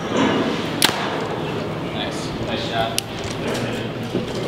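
A compound bow shot: the string is released right at the start, and a single sharp crack follows a little under a second in as the arrow strikes the foam 3D target, over steady background chatter.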